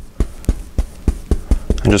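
Paintbrush tapped repeatedly into oil paint on a palette to load the bristles with color: a quick, even run of soft knocks, about five or six a second.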